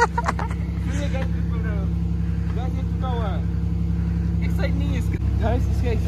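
A motor running steadily with a low, even hum, with faint voices in the background.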